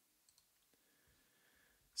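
Near silence with two faint computer mouse clicks about a third of a second in.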